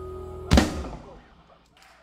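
A live rock band's held closing chord, ended by one loud final hit from the whole band and drum kit about half a second in, which rings out and fades to quiet.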